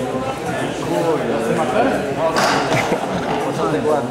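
Several people talking at once, indistinct chatter, with a brief sharp noise a little past halfway through.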